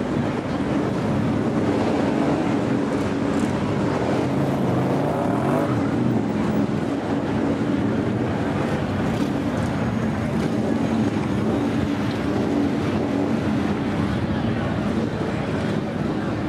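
Motorcycle engines running at low speed in a crowded street, a continuous low rumble with slight rises and falls in pitch, mixed with the murmur of crowd voices.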